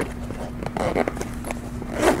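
Handling noise from a padded polyester camera bag: a few light clicks and soft rustles as gear is tucked in and the zipper pull is handled.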